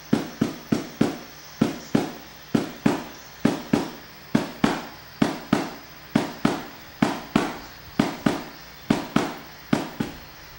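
Music: a drum pattern of sharp, quickly fading hits at about three a second in uneven groups, stopping near the end.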